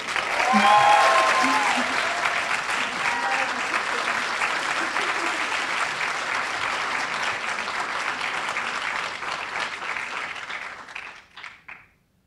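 Audience applauding, with a few voices cheering over the clapping near the start. The applause thins out and dies away near the end.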